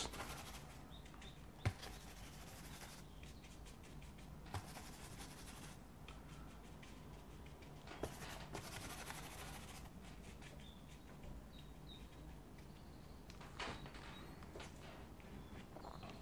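Quiet, soft brushing of a fan brush's bristles on watercolour paper, in short strokes of about a second each, with a few light taps, over a low steady room hum.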